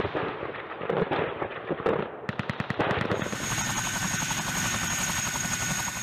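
AH-64 Apache helicopters flying past, their rotors beating in a fast, even chop. About halfway through, a steady high turbine whine comes in over a continuing rotor beat.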